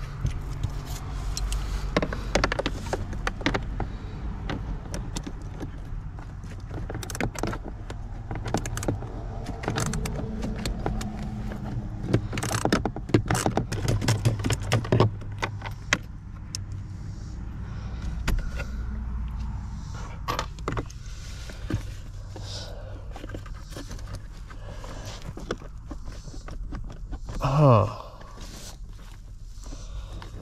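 Hand tools working under a car's dashboard: a socket ratchet and metal tools clicking and clinking in quick, irregular bursts while loosening small bolts, with plastic and wiring rattling, over a steady low hum. Near the end comes a short falling sound, the loudest moment.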